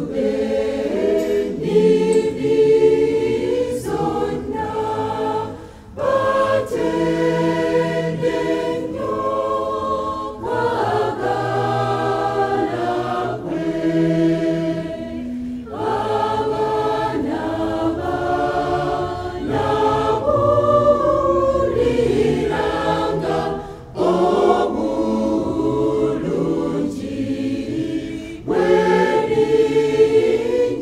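Choir of women's and men's voices singing a gospel song in harmony, in long phrases with brief pauses between them.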